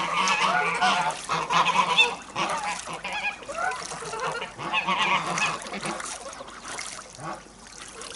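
A flock of white domestic geese calling, many short overlapping honks, thinning out and growing quieter near the end.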